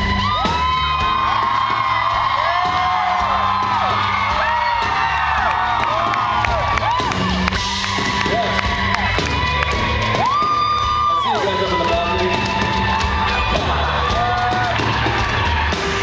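A live band playing, with bass guitar, drums and keyboards, heard from within the crowd. Audience members whoop and cheer over the music again and again, their calls rising and falling.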